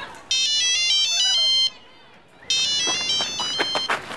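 Mobile phone ringing with a melodic electronic ringtone: a short tune of high notes plays, breaks off for about a second, then starts again.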